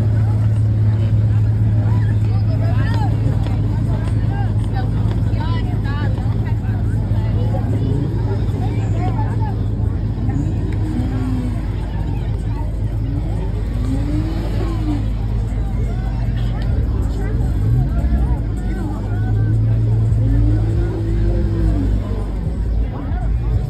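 Crowd of people talking over a car engine idling nearby, heard as a steady low hum that is strongest for the first several seconds and again near the end.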